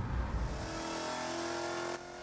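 Edelbrock E-Force supercharged Coyote 5.0 V8 Mustang GT on a chassis dyno winding down just after a full-throttle pull, the engine dropped back toward idle while the car still turns the rollers at speed. A low rumble fades about half a second in, leaving a steady whir.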